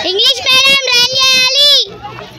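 A child's voice holding one long high-pitched sung or called note for nearly two seconds, dropping in pitch as it cuts off near the end.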